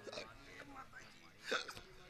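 Faint voices, with one short, sharp vocal sound about one and a half seconds in.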